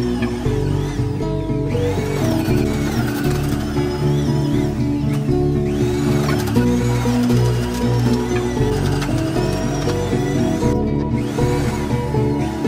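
Background music with held low chords and a gliding melody above.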